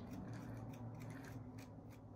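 A small handheld smoothing tool scraping and rubbing along the rim of a wet clay cup in faint, short strokes.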